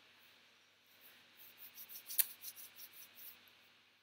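Faint scratchy rustling with small clicks, one sharper click about two seconds in.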